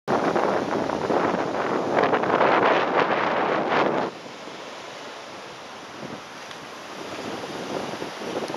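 Wind rushes over the microphone for about four seconds, then drops away suddenly. What remains is a steady, quieter wash of breeze and small surf breaking on a sandy beach.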